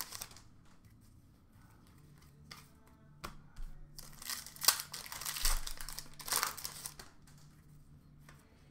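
Plastic trading-card pack wrappers crinkling and cards being shuffled by hand. It comes in short bursts, mostly in the second half, after a quiet start.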